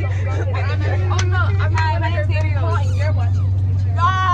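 Several women's voices talking and exclaiming over one another inside a coach bus, over the bus engine's steady low drone.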